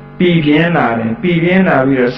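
A monk's voice delivering a Buddhist sermon in Burmese, in a drawn-out, chant-like intonation, coming in after a short pause.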